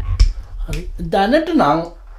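A person speaking, with a single sharp click just after the start.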